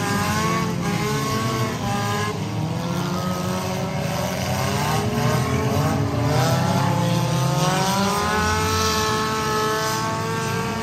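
Several race car engines running together on a figure-8 track, their notes repeatedly climbing as the cars accelerate and dropping as they lift off.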